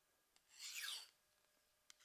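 A single light stroke of a kitchen knife blade drawn along a steel honing rod: a brief metal-on-metal scrape, falling in pitch, followed by a tiny click near the end.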